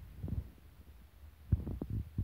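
Low steady hum inside a Thameslink Class 700 train carriage, with a few dull low thumps about a quarter second in and a quick run of them near the end.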